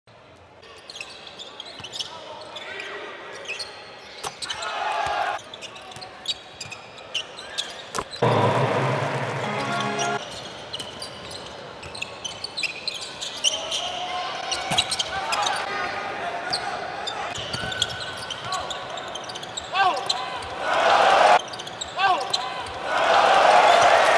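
Basketball bouncing on a hardwood court during play, with repeated sharp knocks and short squeaks from sneakers.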